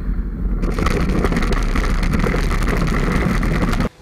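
Road traffic noise from a car driving along a two-lane road: a loud, steady roar with a heavy low rumble that starts and stops abruptly.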